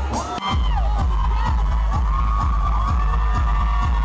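Loud dance music with a heavy, pulsing bass beat through a club sound system, with a crowd screaming and cheering over it; the beat breaks off briefly about half a second in, then comes back.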